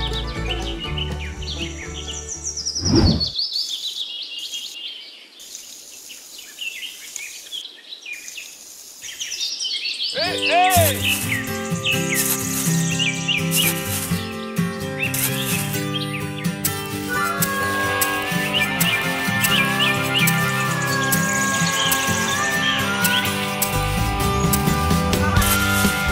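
Background music with birds chirping over it. About three seconds in the music stops, leaving only the chirping, and the music returns about ten seconds in.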